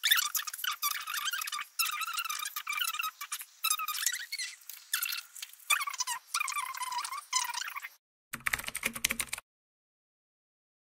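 A high-pitched, squeaky chattering voice, like talking played fast-forward, runs for about eight seconds. Near the end comes a brief burst of typewriter key clicks.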